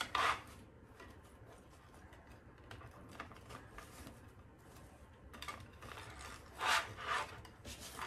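Fabric ribbon rustling and rubbing as it is twisted and pushed down into the slot of a Bowdabra bow maker. There are two louder scrapes near the end.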